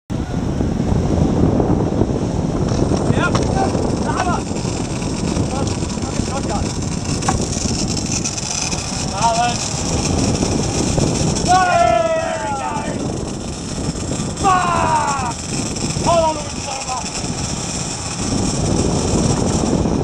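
A boat's outboard motor running under way, with the rush of its wake and wind, and people giving short shouted calls several times over it.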